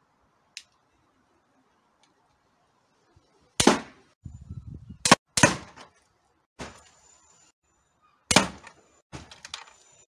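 Pistol crossbow bolts fired into an LCD television: after a faint click, three loud sudden strikes a second or more apart, each fading quickly, with smaller knocks and clicks between them.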